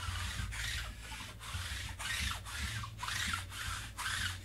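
Repeated scratchy rubbing strokes, about two to three a second, each a fraction of a second long with short breaks between, over a steady low hum.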